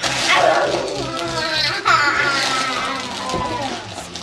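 A young child's excited vocalizing: drawn-out squeals and calls with no clear words, one falling in pitch about two seconds in.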